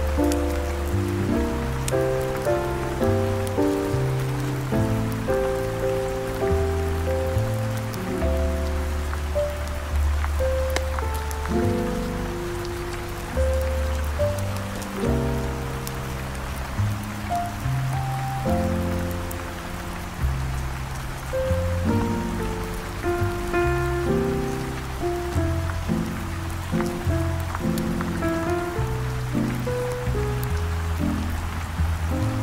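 Smooth jazz with a bass line and melody notes, over steady heavy rain.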